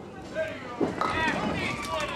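Candlepin ball rolling down a wooden lane and knocking into the thin pins, with a couple of sharp knocks about a second in, under people's voices talking in the alley, which are the loudest sound.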